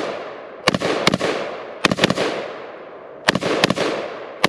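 AR-style 5.56 rifle firing M855 green-tip rounds: about seven shots in quick groups, two pairs and then a triple, each shot trailing off in a long echo.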